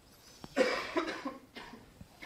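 A man coughing: a loud, rough burst lasting about a second, starting about half a second in.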